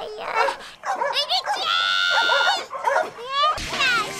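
High-pitched vocal cries and yelps with bending pitch, including one long held cry about halfway through; music with a bass line comes in near the end.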